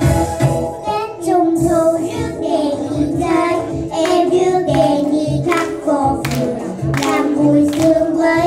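Two young girls singing a song together over a recorded backing track with a steady beat; their voices come in about a second in.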